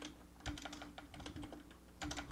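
Faint computer keyboard typing: a run of irregular, quick key clicks.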